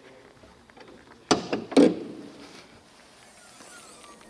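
Bonnet of a Mercedes-AMG E53 Coupe being unlatched and lifted open: two loud metallic clunks about half a second apart, the second ringing briefly.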